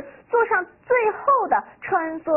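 Only speech: a woman speaking Mandarin in a lively teaching voice, her pitch rising and falling widely.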